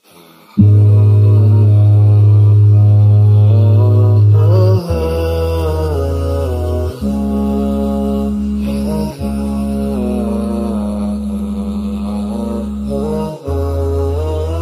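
Programme intro music: a chant-like melodic line wavering over a sustained low drone. The drone starts about half a second in, is loudest for the first few seconds, then drops in level and shifts pitch.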